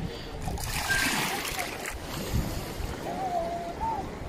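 Choppy sea water splashing close by for a second or so, then lapping, over a low wind rumble on the microphone.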